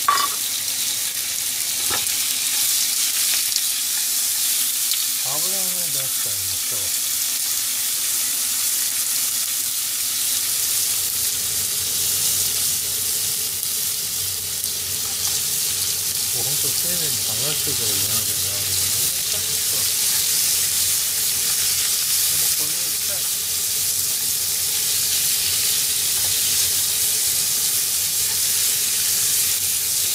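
Slices of pork belly sizzling steadily in a frying pan over a gas flame.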